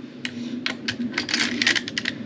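Quick metallic clicks and clinks of steel rifle parts being handled while an AR-15's bolt carrier is swapped for a CMMG .22LR conversion bolt. The clicks come in a loose run, thickest in the second half.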